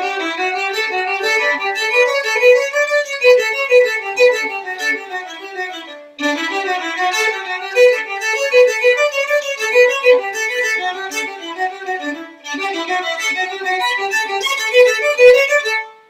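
Solo violin playing fast note-pattern exercises up and down a scale, in three quick runs separated by brief pauses about six and twelve seconds in. These are the kind of self-made practice patterns used in Hindustani classical music to build up to improvisation.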